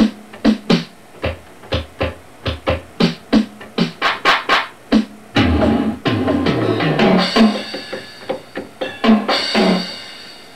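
Ensoniq SQ-2 synthesizer drum sounds played one key at a time from a user setting remapped to the General MIDI drum layout. First comes a run of separate drum hits, about two or three a second; then come a few longer hits that fall in pitch, and ringing cymbal-like washes near the end.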